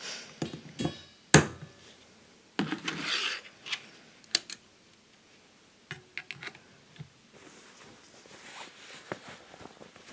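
Metal hand tools being handled on a steel-topped workbench: locking pliers clamping a thin strip of silicon steel, with sharp clicks and clinks and a loud snap about a second and a half in, then a brief scraping rattle. Around six seconds in, a few quick clicks as a jumper-cable clamp is clipped onto the pliers.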